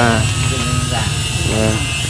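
Short bits of voices talking over a steady low buzz.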